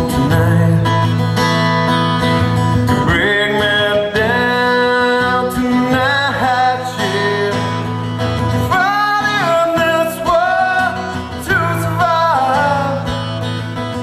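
A man singing with his own strummed acoustic guitar, amplified through a stage PA. The voice comes through more strongly from about nine seconds in.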